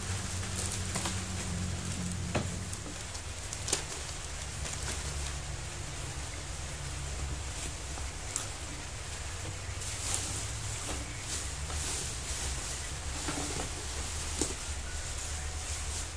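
Plastic packing materials being handled: scattered rustles and light knocks as a plastic courier bag, a kitchen scale and bubble wrap are moved about. Underneath runs a steady hiss of rain and a low hum.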